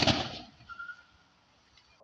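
A single sharp bang right at the start that dies away over about half a second, followed by faint outdoor background.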